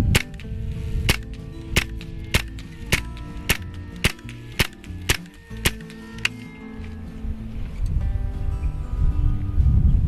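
Hatsan Invader .25-calibre semi-automatic PCP air rifle firing a rapid string of about eleven shots, a little over half a second apart, stopping about six seconds in.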